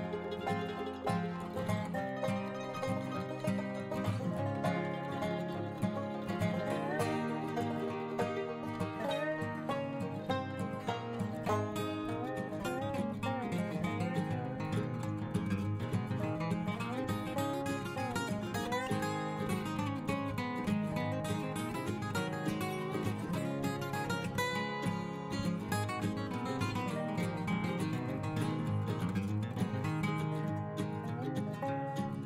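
Instrumental background music playing steadily.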